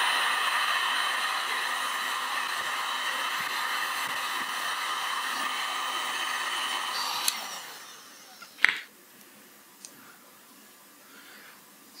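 Electric heat gun blowing steadily as it heats a thermoplastic sheet. It is switched off about seven and a half seconds in and its fan winds down. A sharp click comes about a second later.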